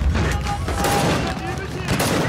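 Battle gunfire: repeated rifle shots in quick succession over a steady low rumble, with voices in the background.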